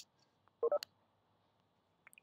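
A pause in a lecturer's speech: mostly silence, with a faint click at the start, a brief voiced sound just over half a second in, and another click right after it.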